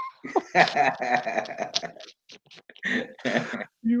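A man laughing in breathy bursts, with a short pause about two seconds in before a further burst of laughter.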